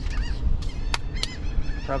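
Birds calling repeatedly with short honking, arching calls, with two sharp clicks about a second in, over a steady low rumble.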